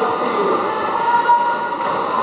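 Many roller skates rolling on a sports hall floor as a pack of roller derby skaters moves together, making a steady rumble, with voices calling out over it.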